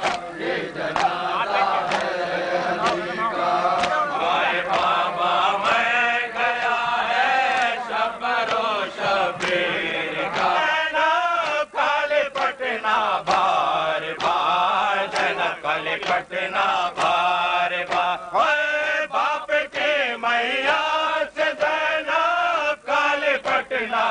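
Men chanting a noha, a Shia lament, led by a male reciter with others joining in. Regular sharp slaps of hands beating on bare chests (matam) keep time under the chant.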